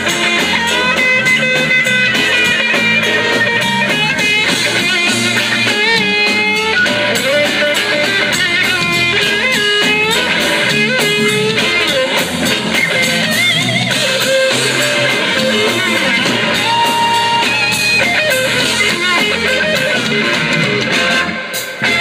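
Live blues band playing with an electric guitar solo on top: the lead guitar bends and shakes sustained notes over a steady drum beat and bass.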